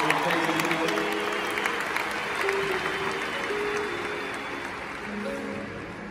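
A large audience applauding and cheering, dying away over soft, sustained instrumental music.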